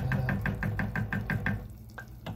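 Wooden spoon stirring thick chili beans in an enameled Dutch oven, making rapid, even knocks against the pot, about eight a second, that stop about a second and a half in.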